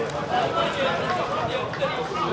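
Indistinct voices of players and onlookers talking and calling out across a football pitch.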